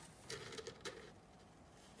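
A ferret in a cardboard box making a few faint, short scratchy sounds, all within the first second.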